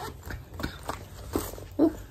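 A woman coughing in a string of short, sharp coughs, the loudest near the end: the coughing of an asthma attack.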